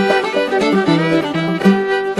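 Old-time string band music: a fiddle playing a stepping melody line in the instrumental lead-in, with string accompaniment underneath.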